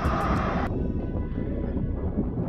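Wind buffeting the microphone, a heavy uneven low rumble, with a brighter hiss on top that drops away under a second in. Faint background music runs underneath.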